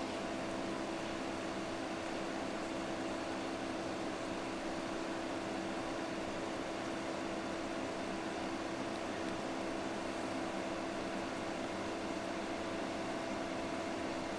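A ventilation fan running steadily: a hum of a few steady tones over an even hiss.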